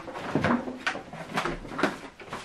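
A series of sharp plastic knocks and clicks as a Numatic vacuum's motor head is unclipped and lifted off its tub, with a cloth filter being handled. The vacuum is not running.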